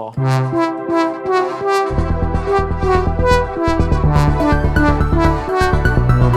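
VPS Avenger software synthesizer preset playing a melodic sequence of changing notes, with a pulsing low bass part coming in about two seconds in and dropping out briefly twice.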